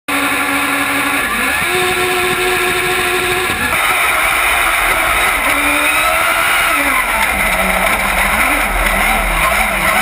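Racing engine of a Buggy1600-class autocross buggy, heard onboard at high revs. It is first held at a steady pitch that steps up once. After an abrupt change about a third of the way in, it rises and falls with throttle and gear changes.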